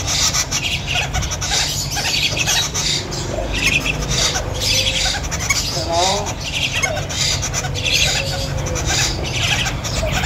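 Caged birds squawking and calling over and over, short harsh high calls about once a second, with a few low wavering calls around six seconds in.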